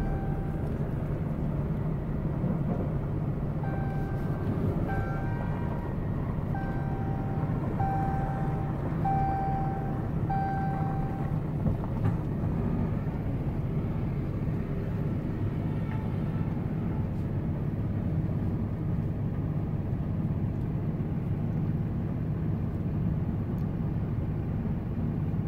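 Pickup truck's engine and road noise heard inside the cab as it creeps into a parking spot, a steady low rumble. A string of short electronic beeps sounds over the first half and then stops.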